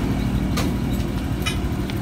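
Steady low hum of a running motor in the background, holding a few fixed tones, with a couple of faint clicks.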